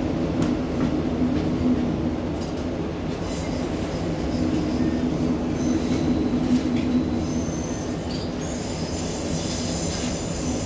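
Passenger train running along the line, heard from inside the carriage: a steady low rumble of wheels on rail. High, thin wheel squeal comes in about three seconds in and carries on, with a second squealing tone joining later.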